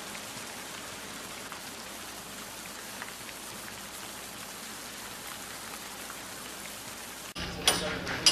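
A steady, even hiss with almost no low end, which cuts off abruptly near the end and gives way to loud, sharp clinks and knocks.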